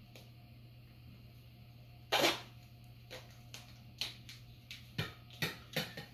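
Duct tape being pulled off the roll and wrapped around a broom handle: a string of short rips and crackles about every half second in the second half, over a low steady hum.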